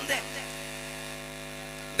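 Steady electrical mains hum from a stage PA sound system, left alone in a pause after a voice over the microphone trails off just at the start.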